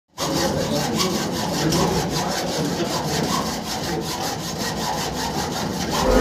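Hacksaw cutting a metal door lock with quick, steady back-and-forth strokes: the strong-room key is lost, so the lock is being sawn off.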